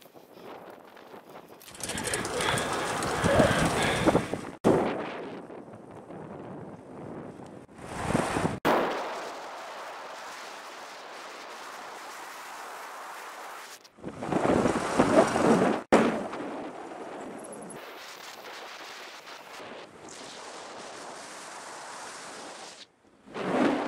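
Wind buffeting the camera microphone: a steady hiss that swells into loud gusts three times and cuts off sharply after each.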